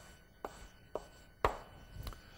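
Chalk on a blackboard: three short sharp taps about half a second apart, the last the loudest, as a box is drawn and a numeral written.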